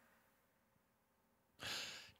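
Near silence, then about one and a half seconds in a short, faint intake of breath by a singer.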